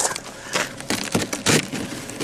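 A series of irregular sharp clicks and crunches, several in quick succession about a second in and again near the end.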